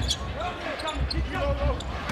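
Basketball being dribbled on a hardwood court, a few low thuds about half a second apart, under steady arena crowd noise with faint voices.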